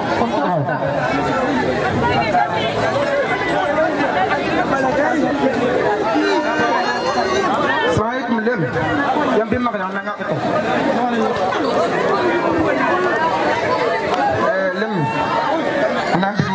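Continuous speech: several voices talking over one another, without pause.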